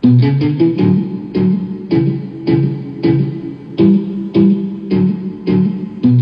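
Electric guitar motif played back from a music project: a plain, unmodulated electric guitar tone with no LFO wobble, playing a rhythmic figure of short notes struck about twice a second.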